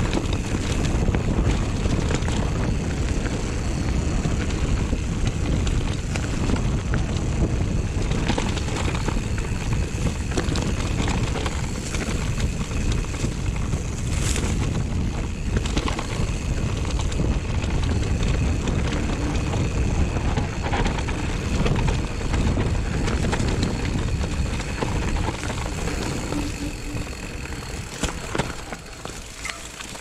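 Mountain bike riding down a rough dirt trail: wind rushing over the microphone, with tyre noise and frequent rattles and knocks from the bike over the ground. It gets quieter near the end.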